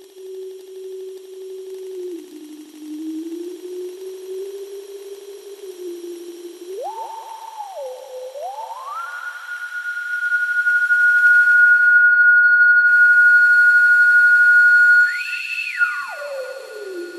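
Experimental electronic drone music: a single pure tone gliding between held pitches, low at first, then climbing in steps to a loud high whine held from about ten seconds in. Near the end it jumps briefly higher and slides back down.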